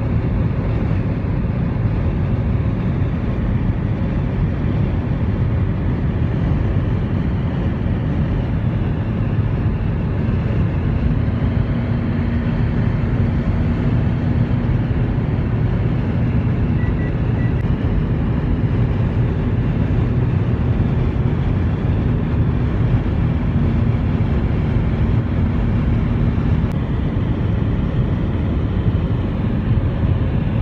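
Steady road and engine noise heard from inside a car's cabin while it cruises along the highway: an even low rumble of tyres and engine, with a faint steady hum over the middle stretch.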